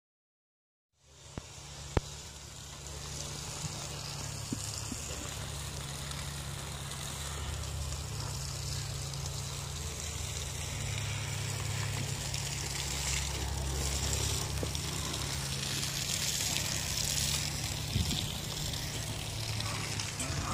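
After about a second of silence, a car engine idles steadily, a low even rumble under a constant hiss, with one sharp click about two seconds in.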